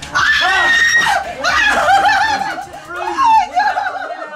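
A woman screaming with delight and laughing, high-pitched, with other voices laughing over her.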